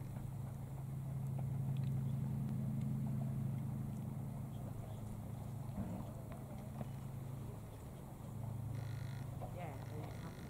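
A low, steady engine drone that swells early on, eases off about eight seconds in and then picks up again.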